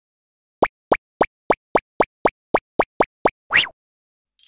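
Cartoon sound effects for an animated logo: a quick run of eleven short plops, about four a second, followed by one longer rising bloop near the end.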